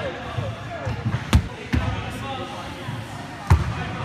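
Medicine balls hitting a wooden sports-hall floor in heavy thuds, the loudest about a second and a half in and near the end, with a few lighter ones between.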